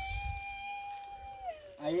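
A single drawn-out, high-pitched vocal call held at one steady pitch for about a second and a half, then sliding down in pitch as it ends.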